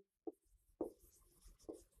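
Faint sound of a pen writing characters on a board: a few short, soft strokes.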